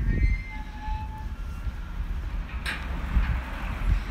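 A steady low rumble of a heavy vehicle or engine, with a short hiss nearly three seconds in.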